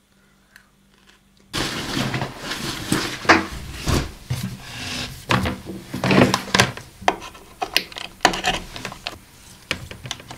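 After about a second and a half of near silence, a run of irregular knocks and clacks as a laptop, its cables and a mouse are handled and set down on a wooden desk.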